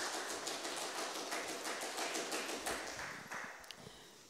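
Audience applauding, a dense patter of hand claps that fades out near the end.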